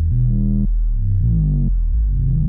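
BugBrand modular synthesizer playing a sequenced run of low notes, stepping to a new pitch about every half second, with the overtones sweeping down and up within the notes.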